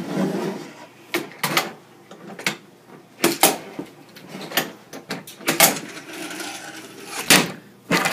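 Hangnail handboard knocking and clacking against a wooden table and a metal pipe rail as tricks are tried: a string of irregular sharp knocks, with a short scrape where the board slides along the rail.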